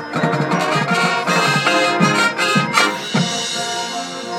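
High school marching band playing: brass chords over drums, with sharp drum hits in the loud middle stretch, easing to softer held chords near the end.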